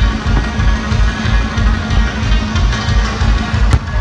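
Live country band music with guitar over a steady, pulsing bass beat. A single sharp crack sounds near the end.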